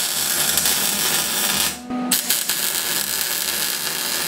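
Wire-feed welder's arc running in two welding runs, with a short break just before two seconds in; each run starts with a brief steady hum.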